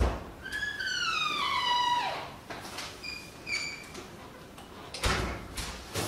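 A door being opened: a knock, then the hinge squeaks in one long falling squeak and two short ones, with a rush of noise near the end.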